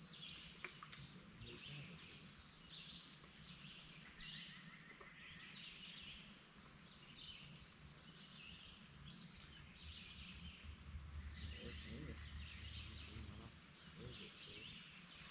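Faint songbirds singing in short, repeated phrases, with a fast high trill about eight seconds in. A quiet low hum runs through the last few seconds.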